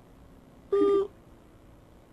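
A single short hoot-like vocal sound on one steady pitch, about a third of a second long, a little under a second in.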